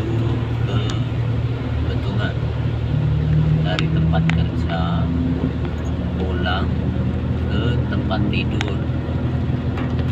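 Steady low rumble of a car's engine and tyres on a wet road, heard inside the car, rising briefly a few seconds in. Brief snatches of voices sound over it.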